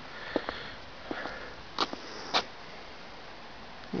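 Two short, sharp sniffs by the person filming, about half a second apart near the middle, over low steady background noise, with a few faint clicks earlier on.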